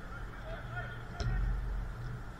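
Ambient sound of a small-sided football game: players' distant calls and shouts, with one sharp knock about a second in, over a steady low rumble.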